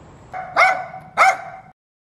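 Small dog barking twice, the barks a little over half a second apart; the sound then cuts off suddenly.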